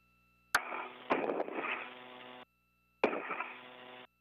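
Space-to-ground radio loop keying on twice, each time with a sharp click. A couple of seconds of narrow-band static and hum follow, fading and then cutting off abruptly, with no clear words.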